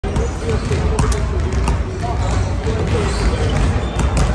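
Basketballs bouncing irregularly on a hardwood gym floor, with voices echoing in the large hall.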